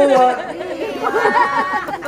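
Speech only: several voices talking over one another, then a man's voice drawn out on a steady pitch.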